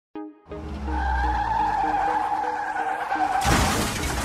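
Race-car sound effect: a low engine rumble and a long, steady tyre squeal over music, ending in a loud rush of noise near the end.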